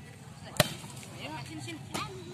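A volleyball being served: one sharp slap of a hand striking the leather ball about half a second in, with a smaller knock near the end, over faint voices of players and onlookers.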